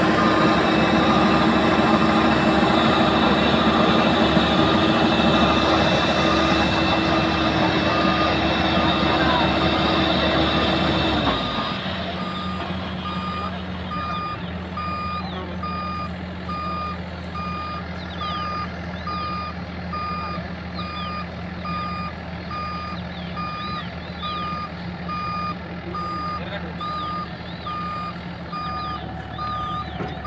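Tracked combine harvester running loud while unloading grain through its auger; about a third of the way in, the machine's note drops and quietens. From then on its reversing alarm beeps evenly over the engine as the combine moves off.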